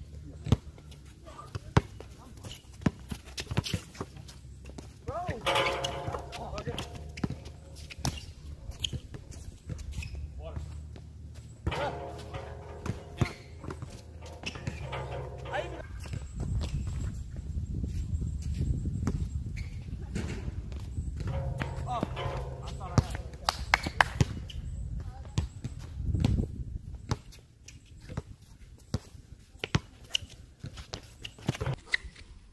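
A basketball bouncing and being dribbled on an outdoor hard court, with many sharp, irregular bounces, and voices calling at times.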